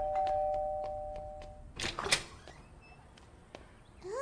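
Two-note doorbell chime, a higher note then a lower one, ringing out and fading over about a second and a half: a caller at the front door. A short clatter follows about two seconds in.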